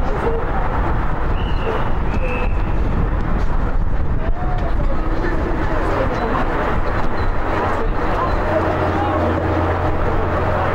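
Players and spectators shouting from a distance during an Australian rules football match, over a loud, steady low rumble of wind on the microphone.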